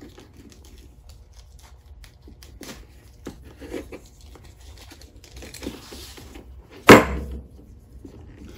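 Leather strap rustling and rubbing as it is pulled through slots in a leash, with scattered small clicks from the brass swivel-snap clip being handled. One sharp knock, the loudest sound, comes near the end.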